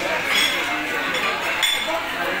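Busy restaurant dining room: people chatting in the background over the clink of cutlery and dishes, with a couple of sharper clinks.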